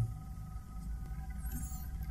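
Low steady electrical hum and hiss from the recording setup in a pause between words, with no distinct event.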